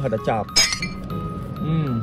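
A short, high-pitched clink or ding about half a second in, over background music.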